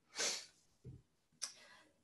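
A short breath drawn in at the start of the pause between sentences, followed by a faint click about one and a half seconds in.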